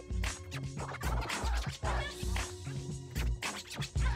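A DJ mix with a heavy kick drum on a steady beat and scratching cut in over the music, quick back-and-forth pitch sweeps.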